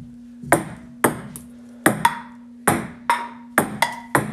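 Table tennis rally: a ping pong ball clicking back and forth off paddles and the table, about nine sharp hits at roughly two a second.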